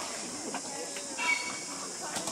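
Faint voices of people over a steady high hiss.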